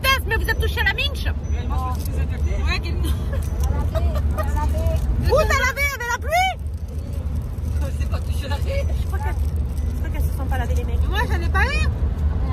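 Steady low rumble of a car driving, heard from inside the cabin, with women's voices talking over it.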